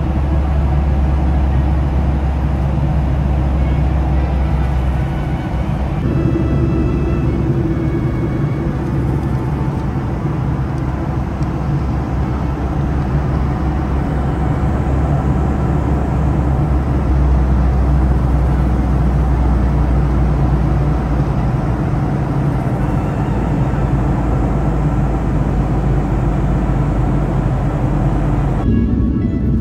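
Steady, loud low rumble of an airliner cabin in flight: jet engine and airflow noise.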